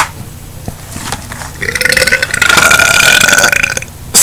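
A man's loud, drawn-out belch lasting about two seconds, starting a little over a second and a half in.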